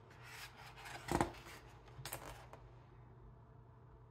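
A page of a large, thick book being turned by hand: the paper rustles and slides, with a soft thump about a second in as the page comes down and a lighter one a second later.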